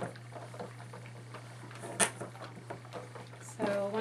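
Steam iron pressing and sliding over a trouser seam on an ironing board: soft rustles and light knocks of the iron and fabric being handled, with one sharp click about halfway through.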